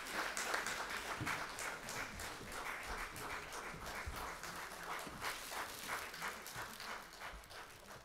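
Audience applauding with many hands clapping, thinning out and fading away near the end.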